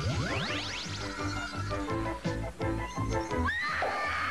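Cartoon score music with a magic-spell sound effect: a quick cluster of rising sweeps at the start, then a melody of short notes over a low pulse, and another rising sweep with a shimmer near the end.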